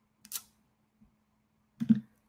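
Quiet room with a faint steady hum, a single brief soft hiss-like noise about a third of a second in, and a short breathy sound near the end just before speech resumes.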